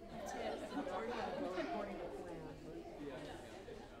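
Indistinct chatter of several overlapping voices, children's among them, with no single clear speaker.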